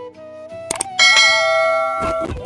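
Two quick mouse clicks followed about a second in by a bright bell ding that rings on and slowly fades, the sound effect of a subscribe-button and notification-bell animation, laid over background flute music.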